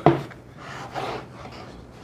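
Freshly mixed wet plaster being tipped out of a mixing bucket onto a spot board: a short knock right at the start, then a quiet soft slop and slide as the plaster comes out.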